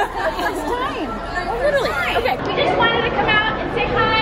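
Excited chatter: several women's voices talking and exclaiming over one another, with the murmur of a crowd in a large hall behind them.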